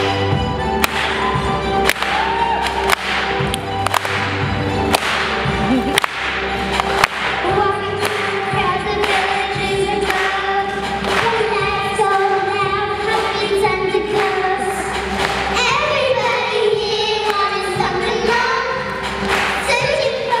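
Backing track with a steady beat about once a second, and two young girls singing into handheld microphones from about seven seconds in.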